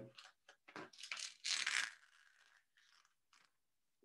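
Faint crackly rustling of paper and tape being handled and peeled: several short scratchy bursts over about the first two seconds, the loudest just before they stop.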